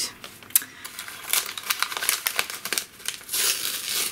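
Brown kraft-paper parcel wrapping crinkling and crackling in irregular bursts as the package is handled and turned over. It grows denser and louder near the end as fingers pick at the packing tape.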